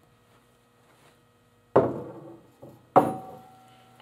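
A steel raised-floor tile, held on a suction-cup lifter, being set down with two sharp knocks about a second apart, each leaving a short metallic ring, with a faint tap just before the second.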